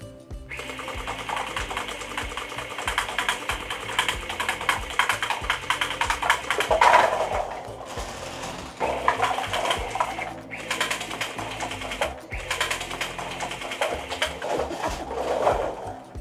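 DJI RoboMaster S1 robot firing its gel-bead blaster in rapid bursts: a fast mechanical clatter that stops briefly several times.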